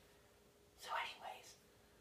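A person whispering a couple of words once, about a second in.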